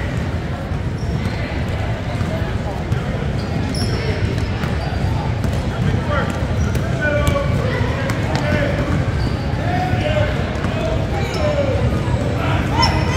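Basketball being dribbled on a hardwood gym floor, a run of sharp bounces amid the echoing din of players and spectators.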